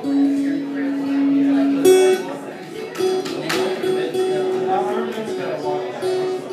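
Guitar single notes plucked and left to ring: one long lower note, then a higher note struck again several times, with people talking in the background.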